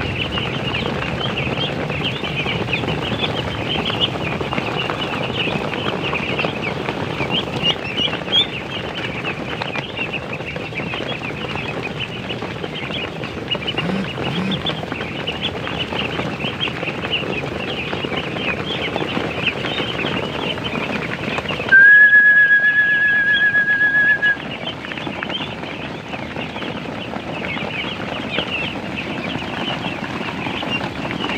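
A large flock of ducklings peeping constantly as they crowd around feed tubs. About two-thirds of the way through, the peeping drops out for about two and a half seconds under a loud, steady high tone with a slight wobble.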